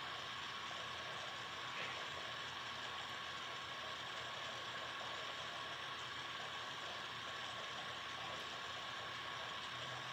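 Steady background hiss, room tone or recorder noise, with a faint constant high tone running through it. No distinct handling sounds stand out.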